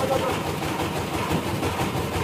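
Sawmill machinery running with a loud, steady mechanical noise.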